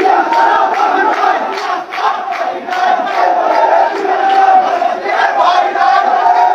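A large crowd of marching men chanting and shouting slogans together, loud and continuous, with hand-clapping.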